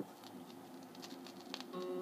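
Crackle and ticking surface noise from a 1968 acetate demo disc playing at low level. Acoustic guitar notes come in near the end.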